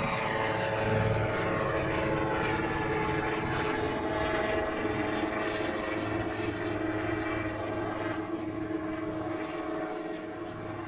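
Super Drifter ultralight's two-stroke pusher engine and propeller at full climb power, a steady drone whose pitch drops in the first few seconds as the plane passes and climbs away. It slowly fades toward the end as it gains height.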